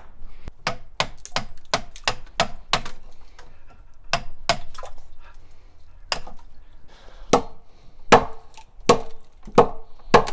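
A hammer driving a hand tool into solid ice frozen over an ice bath, chipping it apart. A fast run of sharp knocks, about three a second, fills the first three seconds, then single strikes follow at longer gaps, the later ones with a short ring.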